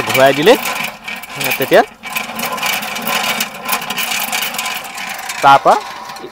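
Hand-cranked honey extractor being turned: its rusty gear drive gives a steady whirring with fast rattling clicks as the comb frames spin inside the galvanised drum, easing off near the end.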